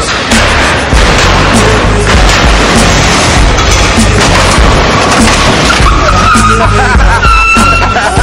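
A hydraulic lowrider car hopping, with dense noisy scraping and clatter over loud music with a heavy beat. A high, wavering held tone joins in about six seconds in.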